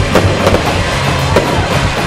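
Fireworks going off, a few sharp bangs and crackles, over loud music with a heavy bass.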